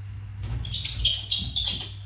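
A baby macaque squealing: a high-pitched cry that sweeps up about half a second in, then wavers for over a second before stopping.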